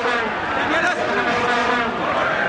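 Stadium crowd with vuvuzelas droning, several horns holding steady notes at once over the crowd noise, with a commentator's voice on top.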